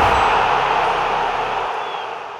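Sound effect of an animated channel logo intro: a loud hiss of noise, like TV static, that fades steadily away, with a faint thin tone near the end.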